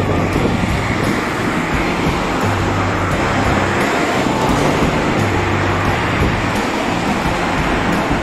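Steady road traffic noise from a busy multi-lane street, with background music and its bass notes underneath.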